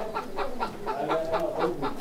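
Faint background clucking of chickens, a few short calls over light yard noise.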